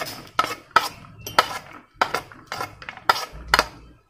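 Metal spoon scraping and tapping against a plate in quick short strokes, about three a second, as pomegranate seeds are pushed off it into a bowl of liquid.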